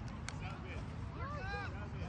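Faint, distant voices calling out across an open soccer field, over a steady low wind rumble on the microphone. A single sharp click comes about a third of a second in.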